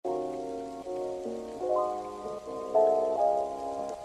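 Background music: a soft melody of held notes over chords, changing about every half second, with no drum beat.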